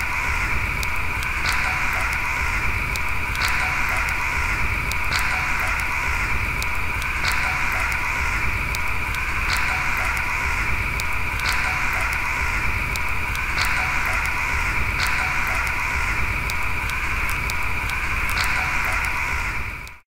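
Open fire crackling: sharp pops about once a second over a steady hiss and a low rumble.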